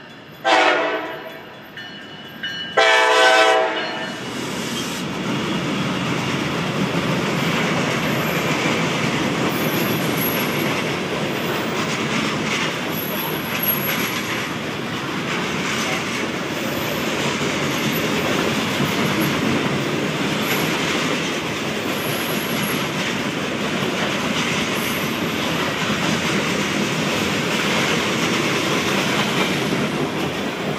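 Norfolk Southern EMD SD60E locomotive sounding its air horn in two blasts, a short one and then a longer, louder one. A steady rolling rumble follows as the train of loaded freight cars passes close by.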